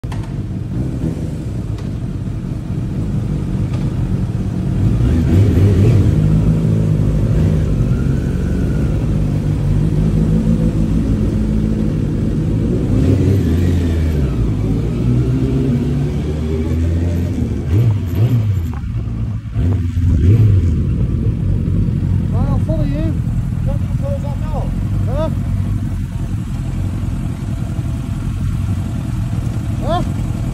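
Suzuki Bandit's inline four-cylinder engine running at low revs, heard from the rider's seat, swelling louder a few times as the throttle is opened to pull away and ride slowly.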